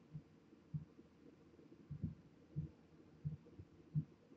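Several faint, low, muffled thumps at irregular intervals, like light knocks or handling bumps, with no motor running.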